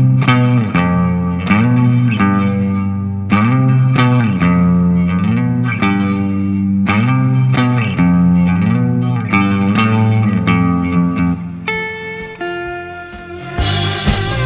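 Fender Stratocaster electric guitar playing a low, repeated melodic phrase, sliding up and then down into each note of the melody. Near the end the notes turn shorter and more separate.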